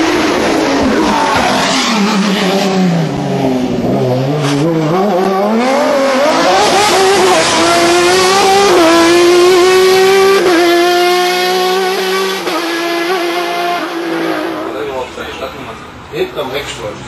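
Osella PA 27 hillclimb racing prototype's engine at full effort: the revs drop over the first few seconds, then climb hard through a couple of quick upshifts as the car accelerates past, and the sound fades as it pulls away near the end.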